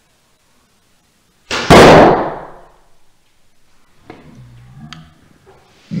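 An arrow shot from a bow and striking a foam block archery target: one loud, sudden smack about one and a half seconds in, dying away over about a second.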